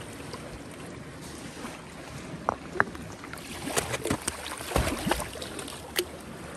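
Shallow sea water lapping and sloshing at a rocky shoreline, with light wind on the microphone. A few small clicks run through the later part, and a dull knock comes about five seconds in.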